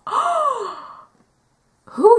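A woman's breathy, drawn-out gasp of shock, its pitch rising then falling over about a second.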